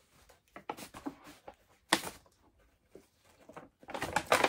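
Scattered rustles and soft handling noises as balls and skeins of yarn are packed into a bag, the sharpest rustle about two seconds in.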